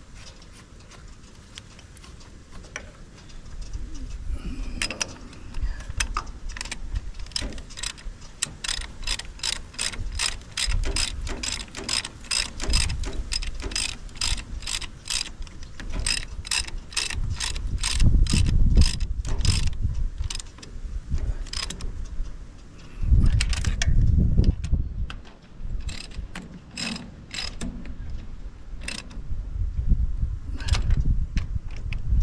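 Ratchet spanner clicking in quick runs, about four or five clicks a second, as the starter motor's mounting bolts on a tractor's Perkins diesel are done up. Heavier low knocks of the tool and hands against the engine come in between, and are loudest roughly two-thirds of the way through.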